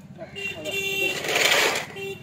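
A low engine running steadily with an even beat, with a short horn-like tone about half a second in and a loud burst of hiss just past the middle.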